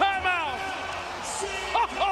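Excited basketball TV commentary: a man's voice exclaiming with long, sweeping pitch glides just after a dunk.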